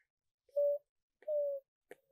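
A toddler's voice making two short play sounds, each held at one steady pitch, about half a second apart.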